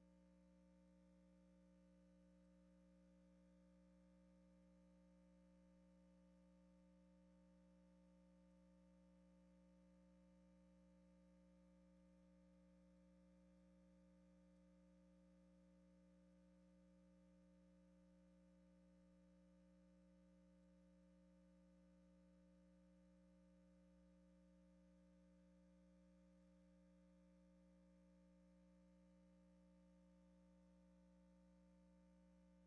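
Near silence: only a faint, steady hum of a few fixed tones that never changes, with no bird calls or other events.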